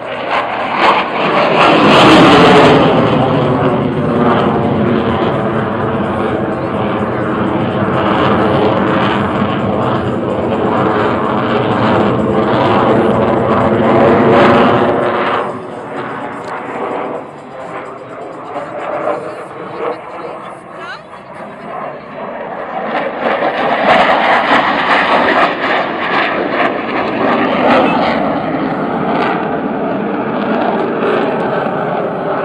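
Jet fighter flying a display pass overhead: its engine noise swells sharply about two seconds in and holds loud with slowly sliding tones, drops off about halfway through, then builds again later.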